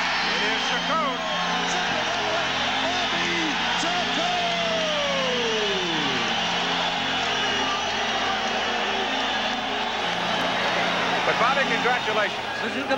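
Large arena crowd cheering and yelling, a dense steady din with individual shouts and whoops rising above it, including one long falling yell about midway.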